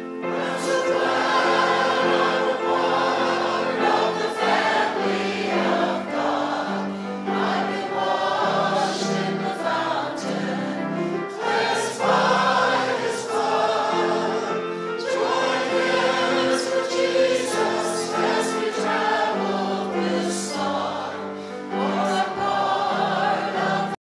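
A church congregation singing a gospel hymn together.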